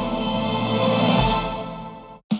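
Background music: a sustained chord that fades out near the end.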